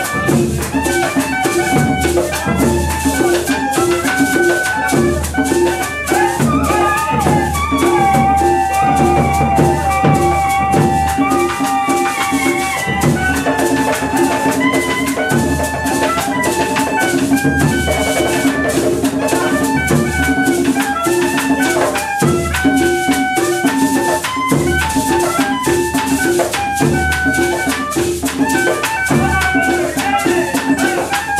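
A traditional cumbia ensemble plays an instrumental cumbia. A caña de millo cane flute carries a high, gliding melody, holding one long note about eight seconds in, over a steady shaker rhythm and hand-drum beats from tambora and tambor alegre.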